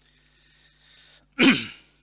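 A man sneezes once: a faint drawn-in breath, then a single loud burst about one and a half seconds in that falls in pitch and fades.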